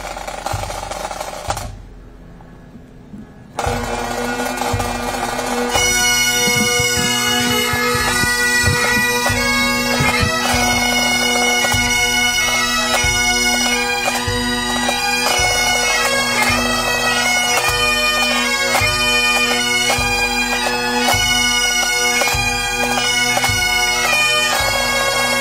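Police pipe band: a short drum roll, then the bagpipe drones strike in about three and a half seconds in, and the chanters take up a slow tune about two seconds later over a steady drum beat.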